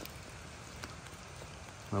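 Low, steady hiss of water in a wet forest, with a couple of faint ticks.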